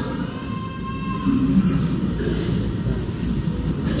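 Low, steady rumble of background noise in a large hall.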